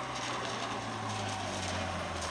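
A motorcycle engine running steadily as it approaches, a low hum that grows slightly louder toward the end.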